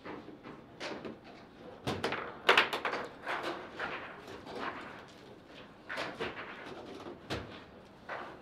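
Table football play: irregular sharp knocks and clacks as the ball is struck by the plastic men and the rods bang, with the loudest flurry about two and a half seconds in.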